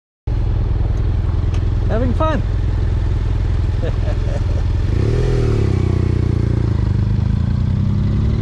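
Honda NC750X parallel-twin engine running at low revs, with wind noise on the helmet microphone; about five seconds in the engine note rises and falls once, as when the bike pulls away and shifts.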